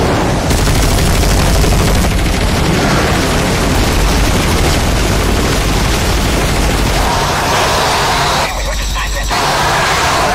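Action-film battle sound mix: a continuous heavy rumble with booms under dramatic music, and a brief burst of rapid gunfire near the end.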